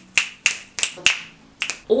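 A person snapping their fingers: a run of about five or six sharp snaps, unevenly spaced, each with a short ring after it.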